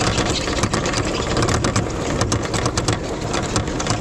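Chain drive of a Grimme potato harvester running, with a fast, irregular clatter of sharp knocks over a low steady hum. The chain tensioner has play and knocks against its tensioning bolt, which is bent and can no longer be tightened.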